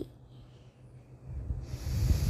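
Faint low background rumble, then a short breathy hiss about one and a half seconds in, like a person drawing breath close to the microphone.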